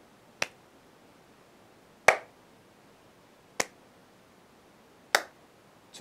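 Hand claps, four sharp single claps about a second and a half apart, the second one the loudest, one clap at each turn of a standing torso-rotation exercise.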